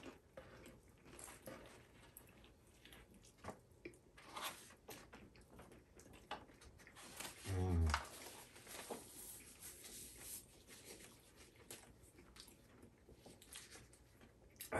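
Faint chewing and biting of a fried chicken sandwich, with scattered small crunches and clicks. A brief voice sound about seven and a half seconds in.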